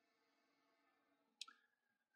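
Near silence, with one faint click about one and a half seconds in.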